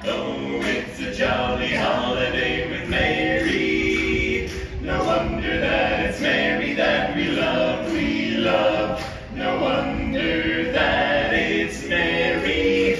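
A barbershop quartet of four men singing a cappella in four-part harmony, in phrases with short breaths between them.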